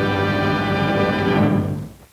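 Orchestral end-title music holding a final sustained chord, which fades out near the end.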